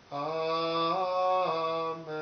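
A solo male voice sings Gregorian chant unaccompanied, on long held notes. The pitch steps up about a second in, falls back half a second later, and breaks briefly at the end.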